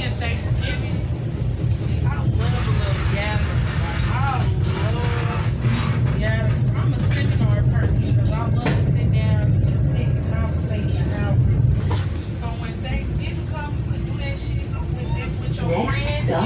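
Commuter train running between stations, a steady low rumble that is heaviest through the middle and eases off near the end, under indistinct chatter of people talking.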